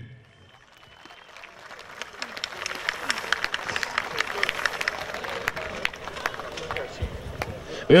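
Audience applauding in the grandstand, the clapping swelling over the first couple of seconds, holding steady and tapering off near the end.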